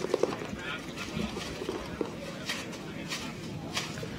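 Scattered paintball marker shots heard from across the field, a few sharp irregular pops, over faint voices from the crowd and players.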